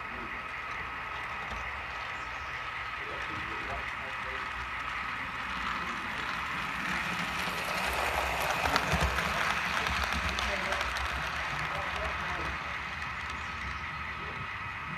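Model trains running on track: a steady high hum throughout, with a louder rumble and rail clatter from about six to eleven seconds as a model steam locomotive passes close by.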